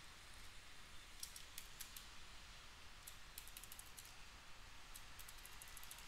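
Faint computer keyboard keystrokes: clusters of quick light clicks about a second in, around the middle and near the end, over a low steady hiss.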